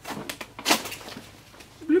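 Heavy firefighter bunker-gear fabric rustling as it is handled, in a few short noisy bursts during the first second or so, the strongest about 0.7 s in.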